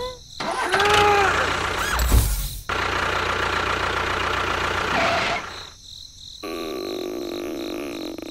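Edited-in sound effects for a toy tractor: a few short cartoon-style sounds that slide up and down in pitch, then a tractor engine effect that starts and runs steadily for about two and a half seconds. After a brief drop, a quieter steady engine hum follows near the end.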